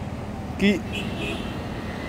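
Steady rushing noise of heavy rain and floodwater, with no clear rhythm or events in it.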